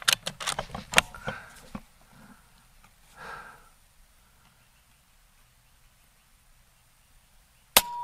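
Air Venturi Avenger .22 PCP air rifle being cycled for the next shot, a quick series of metallic clicks and clacks in the first two seconds. Then a quiet stretch, and one sharp shot near the end.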